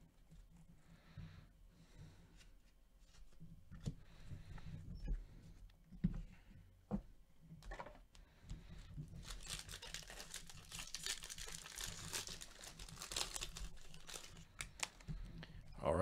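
A foil trading-card pack wrapper is torn open and crinkled, a dense crackling that lasts about five seconds in the second half. Before it come a few soft clicks and taps of cards being handled.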